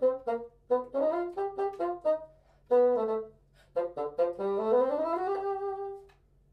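Solo bassoon, unaccompanied, playing a line of short detached notes, then a rising run that lands on a held note, which stops right at the end.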